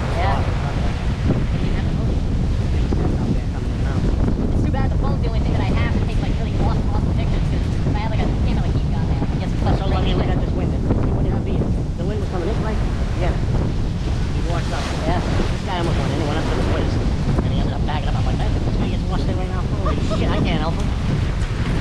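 Strong wind buffeting the microphone over the steady noise of heavy storm surf breaking on rocks, with faint voices talking now and then.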